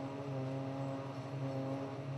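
Diesel engine of a concrete slipform paver running at a steady speed, a constant drone with no change in pitch.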